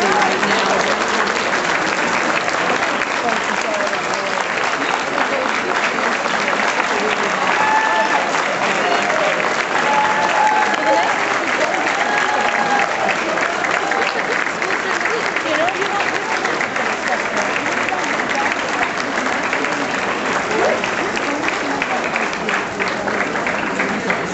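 Audience applauding steadily, a dense sustained clapping with scattered voices and calls through it.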